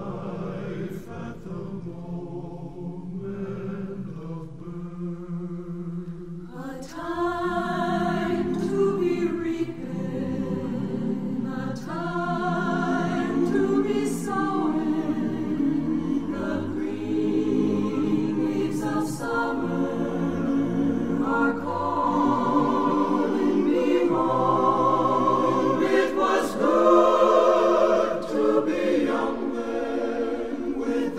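A choir singing a slow ballad in harmony. It is soft for the first several seconds, then grows fuller and louder from about seven seconds in.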